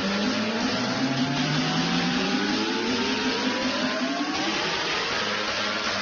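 Road vehicle accelerating: engine running with a whine that rises slowly and steadily in pitch, over steady road noise.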